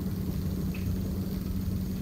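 A steady low hum with no other sound of note.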